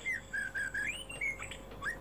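Faint bird calls: a string of short notes that glide up and down.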